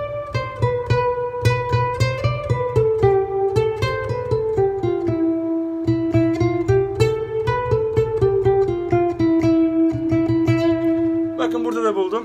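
Classical guitar played fingerstyle: a single-note melody over steady plucked bass notes, stepping downward and settling on a long-held final note, the Mi (E) tonic of the Mi Kürdi maqam. A short bit of voice comes near the end.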